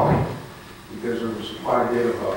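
A man speaking, picked up by the podium microphone, with a short pause partway through.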